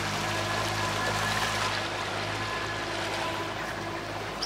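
Yamaha 50 hp outboard motor running at a steady speed as the boat moves, a low even hum with water rushing past the hull.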